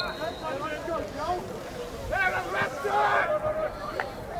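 Spectators calling out and shouting, several voices overlapping, loudest a little past the middle.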